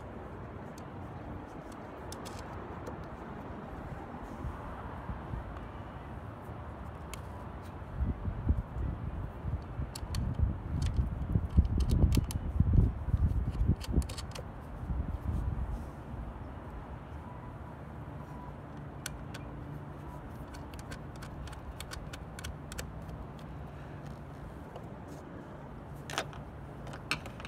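Small scattered clicks and ticks of the mirror's mounting bolts being threaded on by hand, over steady outdoor background noise. A low rumble swells in for several seconds in the middle, the loudest sound, then fades.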